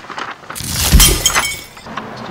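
Glass shattering: a crash that starts about half a second in, is loudest near one second, and trails off in tinkling fragments.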